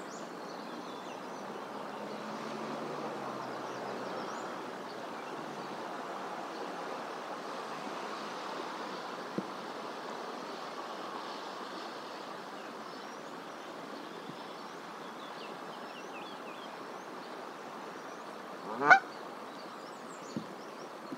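A Canada goose gives one short, loud honk near the end, over a steady outdoor background hiss with faint high chirps.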